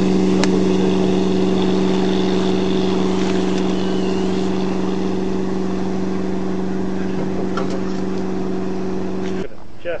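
Inboard engine of a classic wooden speedboat running at a steady, even note that slowly fades, then cuts off abruptly near the end.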